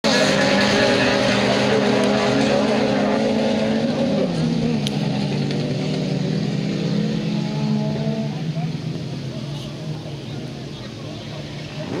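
A pack of autocross cars racing, several engines running at high revs together, their pitch dropping about four seconds in. The sound fades as the cars draw away.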